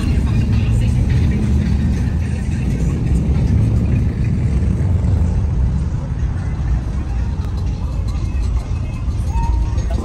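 Engine rumble of classic lowrider cars cruising slowly past in a line, with music playing over it.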